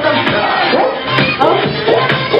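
Party crowd of children and adults shouting and cheering over dance music with a steady beat.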